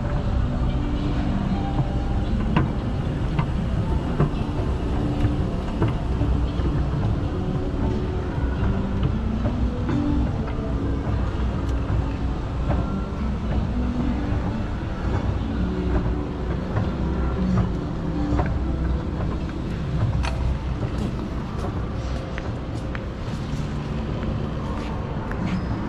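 Mitsubishi AutoSlope inclined moving walkway, a pallet-type moving walk, running under a rider with a steady low rumble from its pallets and drive. A run of light clicks comes near the end, at the landing.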